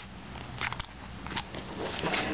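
Light paper rustles and a few short clicks as a cardstock tag is slid back into a paper pocket on a handmade paper-bag album page, over a low steady background hum.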